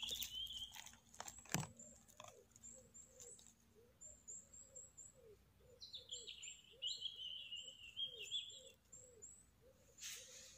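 Faint crackling and snapping of needle litter and twigs as a large porcini-type bolete is pulled out of the forest floor, loudest in the first two seconds. Soft bird chirps repeat in the background, with a longer wavering call near the end.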